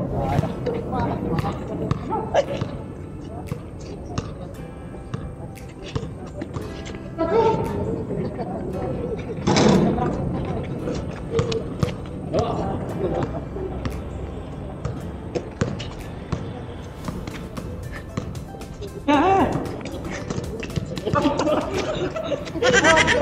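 A basketball bouncing on an outdoor concrete court, repeated sharp knocks through the play, with players calling out now and then.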